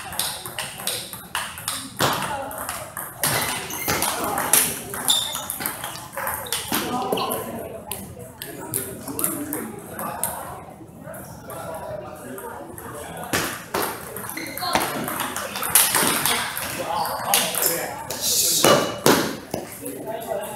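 Table tennis ball clicking off the rubber-faced paddles and the tabletop in quick runs of sharp pings, with pauses between points.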